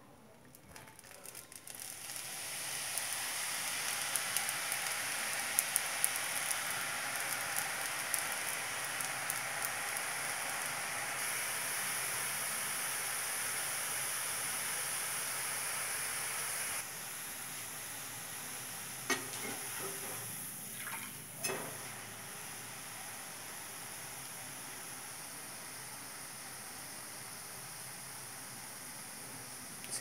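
Thin besan sev strands deep-frying in hot oil in a kadai. A dense, steady sizzle with crackling pops builds up over the first two seconds and runs on, with a couple of brief knocks in the second half.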